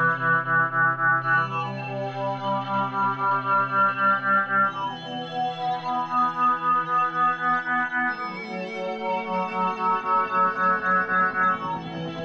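Synthesized ambient music: sustained synthesizer chords pulsing in a steady tremolo of about three beats a second, the chord changing three times, about every three to four seconds.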